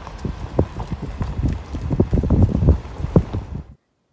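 Irregular knocks and thumps, several a second, over a low rumble, cut off suddenly near the end.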